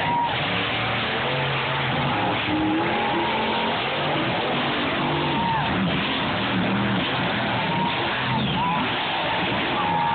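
Monster truck engine running hard and revving across a dirt arena, its pitch rising and falling over steady crowd noise.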